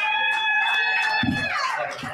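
A long, high-pitched vocal whoop held steady for over a second, then sliding down in pitch near the end, with a short low thump about halfway through.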